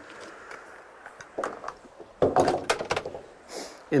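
Booster cables being unclamped and handled: their metal clamps and leads clatter and knock on wooden deck boards. There are a few light knocks first, then a louder run of clattering a little after two seconds in.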